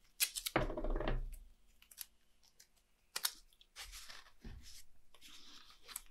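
Masking tape being peeled off its roll in a long strip: a few crackles and clicks in the first half, then a longer rasping pull from about four seconds in.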